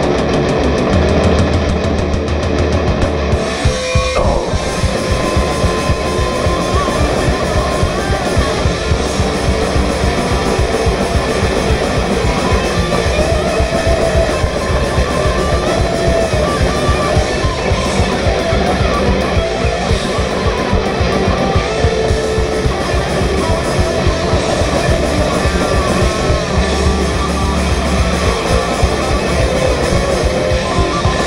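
Thrash metal band playing live, loud and dense: distorted electric guitars and bass guitar over a fast drum beat.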